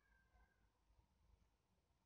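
Near silence: faint room tone, with a very faint, brief high-pitched squeak in the first half-second.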